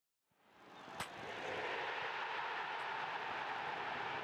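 Intro sound effect: a steady rushing noise that fades in over the first second, with a sharp click about a second in.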